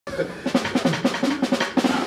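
Drum kit played in a fast, even run of snare strokes, about seven a second, with band music underneath.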